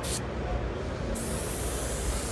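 Gravity-feed airbrush spraying: a brief hiss of air at the start, then a steady hiss from about a second in as the trigger is held down.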